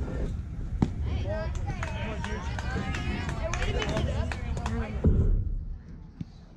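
Indistinct voices of players and spectators calling out at a youth baseball game, over a steady low rumble. Just under a second in there is a single sharp smack as the pitch arrives at the plate, and a louder low thump comes near the end.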